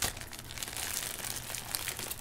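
Package wrapping crinkling and tearing as it is opened, with a sharp click at the very start and continuous crackling after it.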